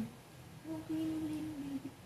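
A woman humming one steady low note for just over a second, starting about half a second in.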